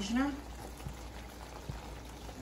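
Spaghetti in Alfredo sauce simmering quietly in a pan, a faint steady bubbling hiss, with a couple of faint light clicks.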